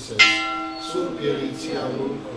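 A bell struck once, a sharp strike followed by several ringing tones that die away within about a second.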